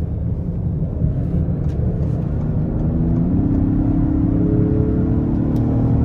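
The 3.0-litre twin-turbo V6 of a Lincoln Aviator Black Label under hard acceleration, heard from inside the cabin: the engine note climbs in pitch, jumps up about three seconds in and holds over a steady road rumble.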